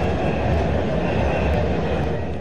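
Steady outdoor ambience of a large street march: an even rumble and hiss of crowd and street noise, with no distinct voices or events.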